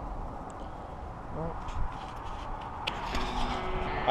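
Low, steady rumble of street traffic by a road, with a brief snatch of voice and a sharp click about three seconds in.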